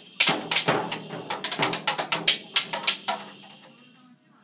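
Child's toy drum kit beaten with drumsticks: a rapid, irregular flurry of hits that stops about three seconds in.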